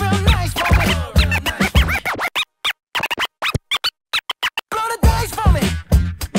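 Scratching on a DJ controller's jog wheel over a hip-hop beat. About two seconds in the beat drops out and the scratches come as short chopped cuts with silent gaps between them; the beat comes back near the end.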